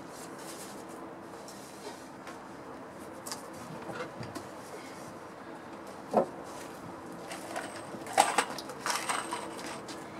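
Cedar boards being handled and laid across each other to frame an arbor side, with one sharp wooden knock about six seconds in and a cluster of clattering near the end.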